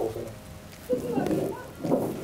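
A man's voice, quiet and murmured, in short bits with a longer stretch about a second in.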